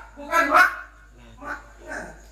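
A man's voice speaking into a microphone over a PA system, in short, separate bursts.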